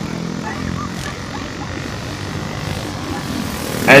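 Racing go-kart engines running steadily at a distance, a continuous buzzing drone as the karts lap the circuit.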